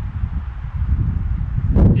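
Wind buffeting the microphone: a rough, steady low rumble, with a brief louder gust of noise near the end.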